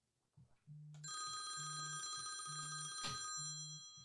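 Phone ringing with an incoming call: a ringtone of several high steady tones starting about a second in, with a low buzz pulsing on and off roughly once a second underneath. A click about three seconds in, after which the high tones fade.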